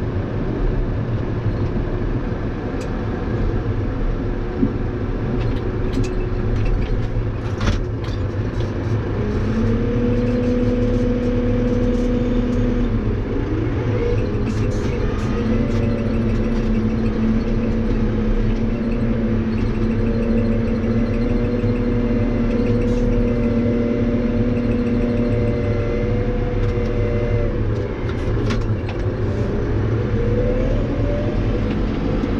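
Case tractor's diesel engine running steadily, heard from inside the cab, with light rattles. A steady whine comes in about nine seconds in and holds for most of the rest, sliding in pitch a couple of times as engine speed changes.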